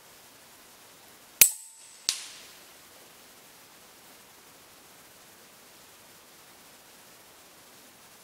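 A Huben K1 PCP air rifle fires a .22 cast lead slug with one sharp, loud report. About two-thirds of a second later comes the weaker, delayed smack of the slug hitting a hanging metal target about 100 m away, with a short ring after it.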